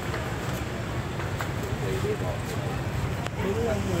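Steady street traffic noise with a low engine hum, faint voices in the background during the second half, and a couple of light clicks.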